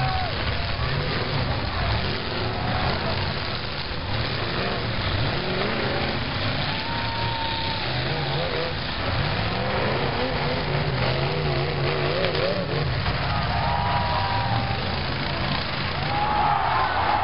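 Several demolition derby cars' engines running hard and revving up and down, a continuous loud engine din with tyres spinning on dirt.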